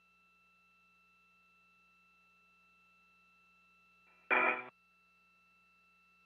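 Near silence on the spacewalk radio loop: a faint steady hum of several fixed tones, broken about four seconds in by one short, loud burst under half a second long, a clipped radio transmission.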